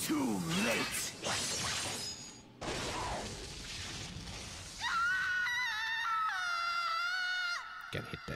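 Anime episode soundtrack: a voice crying out amid crashing, shattering sound effects, then a held musical chord from about five seconds in that cuts off just before the end.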